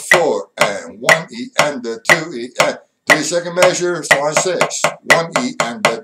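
A drum struck with sticks, playing a written rhythm at 60 beats a minute: single strokes and quick groups of sixteenth and eighth notes, each hit sharp with a short ring, with brief gaps between groups.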